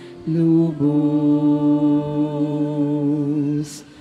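A singer's voice holding the long, slow notes of a communion hymn, with slight vibrato and a few steps in pitch. It pauses briefly right at the start and again near the end, where there is a short hiss.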